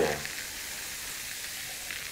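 A steady, even hiss of background noise, with the tail of a man's voice just at the start.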